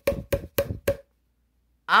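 Steady wooden knocking, about three and a half strikes a second, each knock with a short hollow ring; it stops about a second in.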